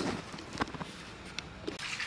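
Quiet handling with a few faint clicks, then near the end water starts pouring from a glass measuring jug into a glass bowl.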